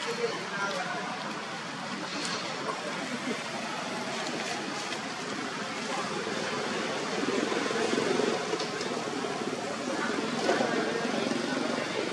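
Steady outdoor background noise with indistinct voices in the distance and a few faint clicks.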